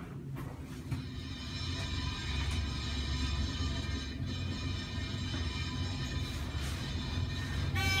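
Fujitec traction elevator car travelling between floors: a steady low rumble with a constant high whine that starts about a second in and dies away just before the car arrives. It runs a little noisy, which the owner puts down to a need for lubrication.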